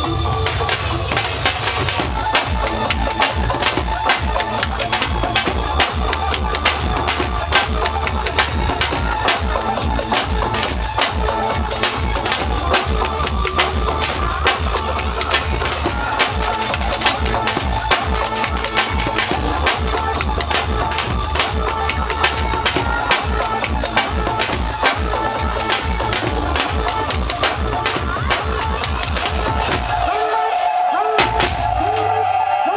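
Several dhol drums played live together in a fast, driving bhangra rhythm of rapid strokes, with a steady low bass underneath.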